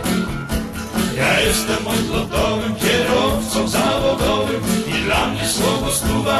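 Country song: a voice singing over guitar accompaniment with a steady beat.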